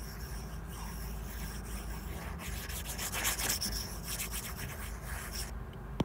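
A stylus scrubbing back and forth across a tablet screen to erase handwritten digital ink: a scratchy rubbing, busiest a few seconds in, that stops about half a second before the end.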